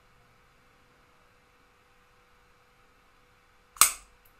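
Near silence, then a single sharp, loud click near the end: an Ajovy autoinjector firing as it is pressed against the thigh and the needle goes in automatically.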